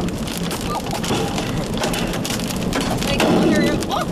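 Rain pelting the body and windshield of an armored storm-chasing vehicle, heard from inside the cabin as a dense patter of sharp hits.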